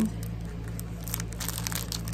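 Clear plastic sleeve crinkling as it is handled around a thin metal craft cutting die. The crackles grow busier about a second in.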